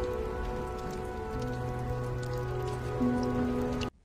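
Film soundtrack: sustained low music notes and chords held over a steady rain-like hiss, with a new deep note entering about a second and a half in and another at three seconds, a little louder. It cuts off abruptly just before the end.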